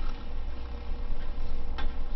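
Footsteps of a man walking across a stage, heard as two soft clicks about half a second apart over a steady low hum, picked up by his clip-on lapel microphone.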